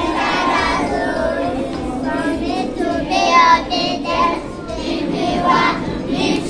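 A group of young children singing together.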